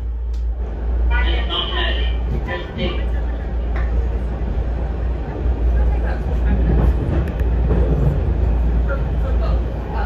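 Washington Metro railcar rolling slowly along the track, a steady low rumble heard from inside the car, with voices briefly about a second in.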